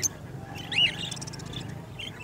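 Small caged parrots chirping, with one clear, arching chirp a little under a second in and fainter high chirps around it, over a low background murmur.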